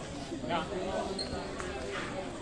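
A futsal ball thudding on a hard concrete court a couple of times as it is played, with players' voices calling out.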